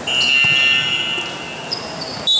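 Referee's whistle blown to stop play: one long, steady, shrill blast lasting about a second and a half, with a short, higher blast near the end.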